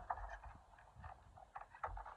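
Skateboard and shoes on concrete: a few light, irregular taps and knocks as the board is nudged and repositioned by foot.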